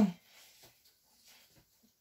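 A woman's short voiced 'oo' trails off at the start, then faint mouth sounds of chewing a pancake.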